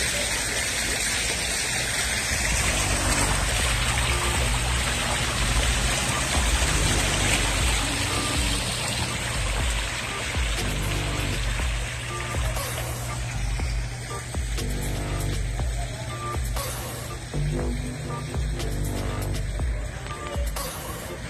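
Water splashing and falling in a tiered outdoor fountain, a steady rush that thins out after about twelve seconds. Music plays under it throughout.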